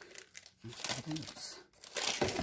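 Plastic wrapping crinkling in quick crackles as potted plants are handled, with a brief low murmur of a voice in the middle.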